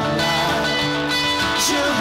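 Live worship band playing, with electric guitar and keyboard held tones over drums, and a singing voice coming in near the end.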